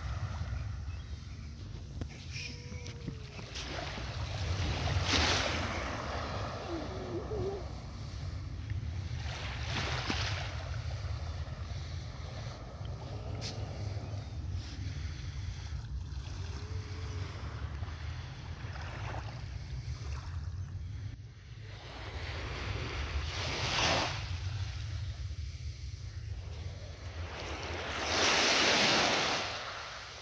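Small waves lapping and washing onto a sandy shore from a calm sea, swelling louder a few times, most of all near the end. Wind rumbles on the microphone underneath.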